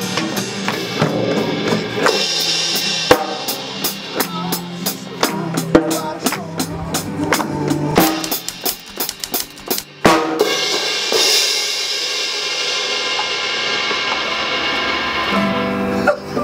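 Drum kit played hard and fast, with a rapid run of snare and tom strikes over a low steady note. About ten seconds in, a heavy hit sets the cymbals crashing, and they ring on in a sustained wash.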